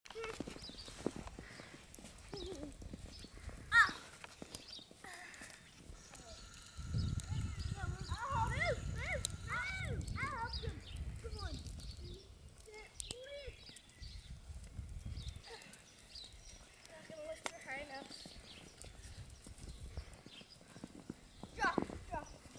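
A horse neighing in a run of rising-and-falling calls about eight to eleven seconds in, over wind buffeting the microphone. Faint children's voices come and go, with a brief sharp cry about four seconds in.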